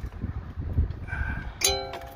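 A metal safety-chain hook clinking against the PTO drive shaft as it is clipped on. One sharp, briefly ringing clink comes near the end, over a low rumble of handling noise.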